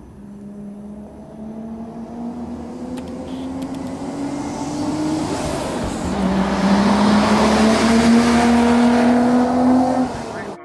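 Nissan Skyline R33 GTR's HKS twin-turbo RB26/28 straight-six accelerating toward the listener and getting steadily louder. The engine note climbs, drops once about halfway through as at an upshift, then climbs again.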